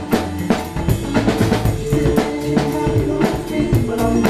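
Acoustic drum kit played live in a hip-hop groove, kick, snare and cymbals in a quick steady beat, over the song's recorded instrumental with held bass and keyboard notes.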